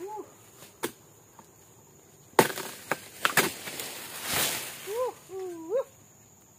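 A dodos, the chisel-bladed oil palm harvesting tool, chopping into a palm's frond or bunch stalks. There is one sharp crack about two and a half seconds in, then a few quicker knocks and a rustling swish.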